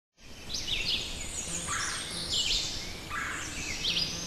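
Several birds singing and calling, with short overlapping chirps and quick sweeping notes at different pitches, over a steady low background noise.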